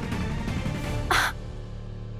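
Dramatic background music of a TV serial: layered held tones, cut by a short, harsh accent about a second in, then a steady low drone.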